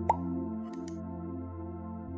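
Slow ambient spa music with sustained, gently pulsing chords. A single short, rising water-drop plop sounds just after the start and is the loudest moment.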